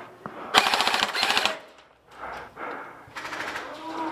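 Airsoft electric rifle firing on full auto: a rapid burst of about a second, then a shorter burst of about half a second near the end.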